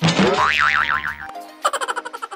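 Cartoon 'boing' sound effect: a loud spring twang whose pitch wobbles rapidly up and down for about a second, then cuts off. Light background music picks up again near the end.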